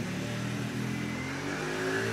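A motor vehicle's engine running nearby, its pitch rising slowly in the second half.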